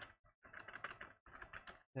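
Faint computer keyboard typing, a run of irregular keystrokes as an answer is typed in.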